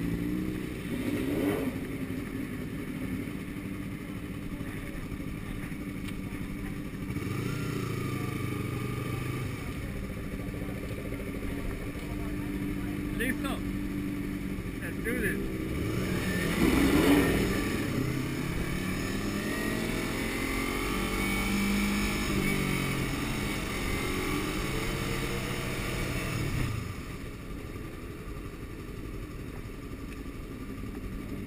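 Sport motorcycle engines running at low speed, revving up and down several times as the bikes pull away and roll slowly. The loudest rev comes about halfway through, and the engine note drops back near the end.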